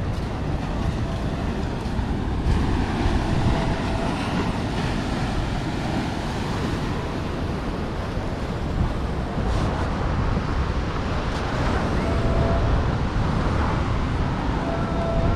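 Sea waves rolling in and breaking against a stone breakwater, a continuous rushing wash of surf, with wind buffeting the microphone.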